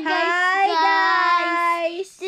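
A child and a woman holding one long, steady sung note together.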